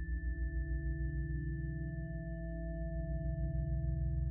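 Meditation drone of steady, ringing tones over a low drone that pulses rapidly, the beating pulse of a brainwave-frequency soundtrack. A new, higher ringing tone comes in at the start and holds steady.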